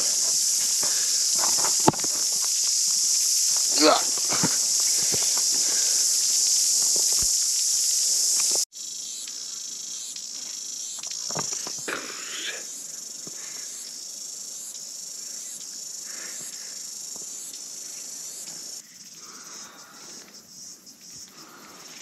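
Cicadas singing as a loud, steady, high-pitched buzz, which cuts off abruptly about a third of the way in. A quieter cicada song follows, pulsing about once a second, and fades further near the end. Scattered footsteps and brief vocal sounds are heard over it.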